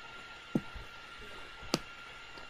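Two faint short clicks about a second apart, over a faint steady whine and hiss of background noise.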